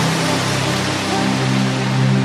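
Melodic techno in a breakdown: the kick drum drops out right at the start, leaving a wash of white noise over held synth bass and pad notes.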